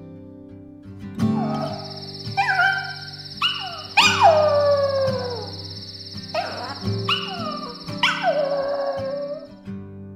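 A small dog howling: a series of about seven short howls, each sliding down in pitch, the loudest and longest about four seconds in. Soft acoustic guitar music and a high steady ringing tone run underneath.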